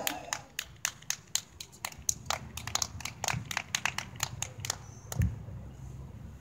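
Scattered hand clapping from a small group of people, uneven claps several a second, dying out about five seconds in, with a single low thump near the end.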